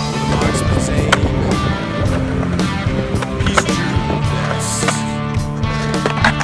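Skateboard wheels rolling on a concrete bowl with several sharp clacks of the board, mixed under loud rock music.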